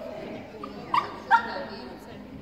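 A dog barking twice, two short sharp barks less than half a second apart, over low background voices.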